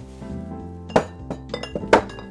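Glass liquor bottles clinking against each other on a crowded back-bar shelf as one bottle is put back and another taken down. There are two sharp clinks about a second apart, with lighter knocks between them, over background music.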